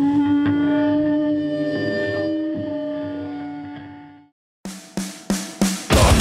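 A held, ringing electric-guitar chord slowly fades away. After a brief silence come four quick, sharp drum hits counting the song in.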